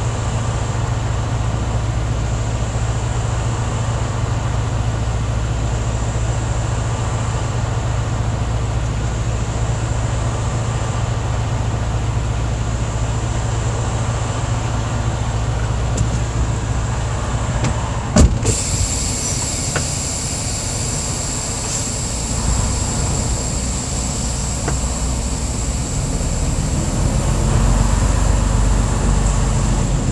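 Semi-truck diesel engine idling, heard inside the cab. About two-thirds through comes a sharp click, after which a high hiss joins, and the engine grows louder near the end as the truck pulls away.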